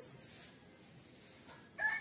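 A rooster begins to crow near the end, a long held call after a quiet stretch.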